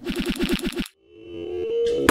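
End-card sound effects for an animated logo: a quick fluttering rattle of about nine pulses a second lasting under a second, then after a brief gap a whoosh that swells steadily louder toward an impact.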